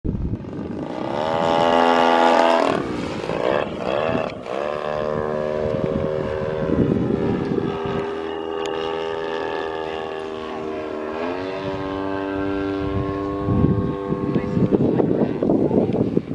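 A giant-scale RC aerobatic airplane's motor and propeller in flight, the pitch changing with the throttle. It climbs sharply in the first couple of seconds, drops back, runs steady, then steps up again about eleven seconds in.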